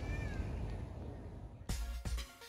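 Outdoor garden ambience with a low wind rumble on the microphone and one short high animal call just after the start; about 1.7 s in, it cuts abruptly to music.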